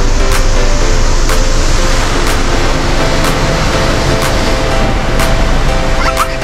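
High-pressure water jets of a robotic car wash spraying onto the car's windshield and body, a steady loud hiss heard from inside the cabin.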